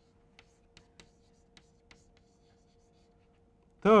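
Chalk writing on a blackboard: a string of faint taps and scratches as a word is written, over a faint steady hum. A man's voice comes in at the very end.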